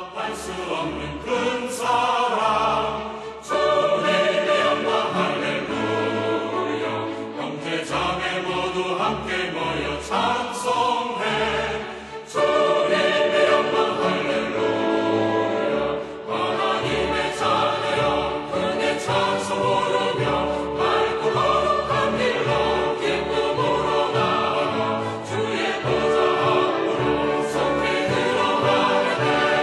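Choral music: a choir singing sustained lines.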